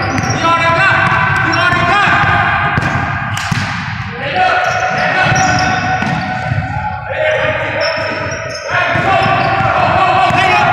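A basketball dribbled on a hardwood gym floor, with the bounces echoing in the large hall. A singing voice with long held and sliding notes runs over it and is the loudest sound.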